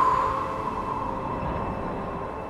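A steady rushing sound effect with a held tone that fades over the first second, easing slowly in level: a sound-design bed evoking the rush of riding a wave.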